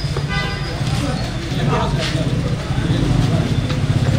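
Street sound: people talking around the camera over a steady low rumble of road traffic, with a brief flat-pitched tone about half a second in.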